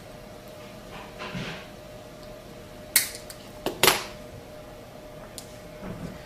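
Sharp clicks from a hand-held orthodontic wire cutter snipping archwire and working against the plastic typodont. The two main clicks come about a second apart midway through, with a softer one between them and another near the end.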